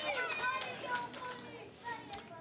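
Girls' voices chattering in a hall, dying down toward the end.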